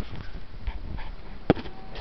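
Handling noise: fingers rubbing and bumping against the camera and its microphone, with one sharp click about one and a half seconds in.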